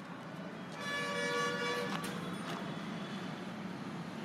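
A vehicle horn sounds once, a steady tone lasting about a second, over the low hum of street traffic.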